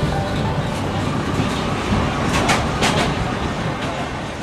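Passenger train running, heard from inside the carriage: a steady rumble of the ride with a few sharp clacks just past the middle.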